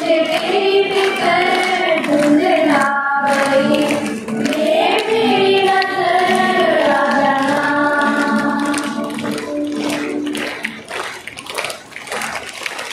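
Children's choir singing a song together with acoustic guitar accompaniment, holding long, gliding notes. The singing fades out near the end.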